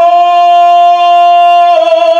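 A man singing one long held note, steady in pitch and loud, that shifts slightly near the end.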